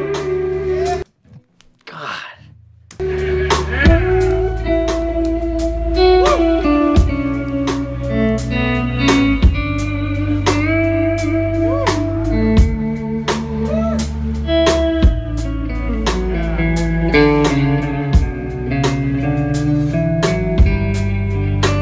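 Instrumental rock played live: a lead electric guitar holds and bends singing melody notes over bass and drums. A held note is followed by a brief near-silent break, and the full band comes back in about three seconds in.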